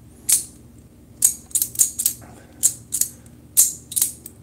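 A metal folding utility-blade knife being handled and worked: a series of about ten sharp, short metallic clicks at uneven intervals.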